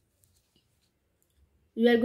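Near silence with a few faint clicks, then a voice starts speaking near the end.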